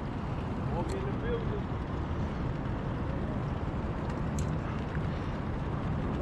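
Steady outdoor background noise with faint voices in the first second and two light clicks, about a second in and past the middle.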